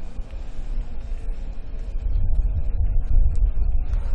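Low, steady rumble of arena background noise that grows louder about halfway through, with a few faint clicks.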